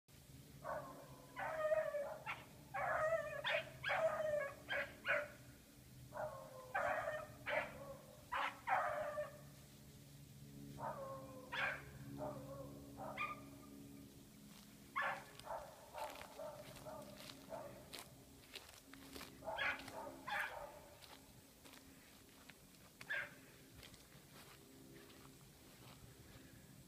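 Rabbit-hunting dogs baying on a swamp rabbit's trail. The quick yelping bays come in clusters of several a second, thin out in the second half, and end with a single bay near the end.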